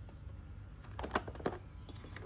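A few light plastic clicks and taps, about a second in and again around a second and a half, from a finger handling the rice cooker's open lid at its steam vent and rubber gasket.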